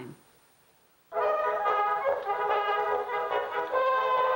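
Wind-up Edison cylinder phonograph playing a Blue Amberol cylinder record. Music with brass instruments starts about a second in and sounds thin, with no bass.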